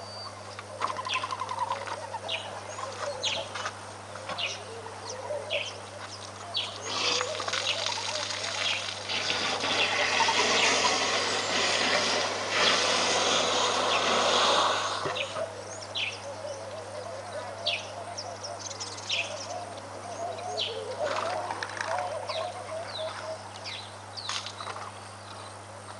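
Splashing water, loudest for about five seconds from roughly ten seconds in, as an African elephant pours water from its trunk into its mouth. Short bird chirps repeat about once a second throughout.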